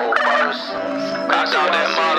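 Hip hop track: a warbling vocal line over a sparse beat, with the deep bass dropped out.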